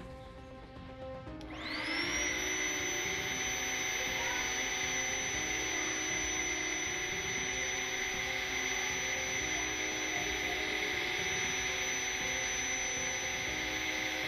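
Electric air pump switched on about one and a half seconds in: it spins up with a brief rising whine, then runs steadily with a high whine, blowing air into an inflatable pool through its valve.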